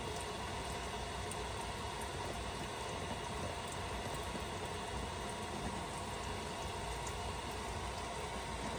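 Steady hiss of water from a garden hose running over the roof around a turbine vent, muffled as heard from the attic underneath during a hose leak test.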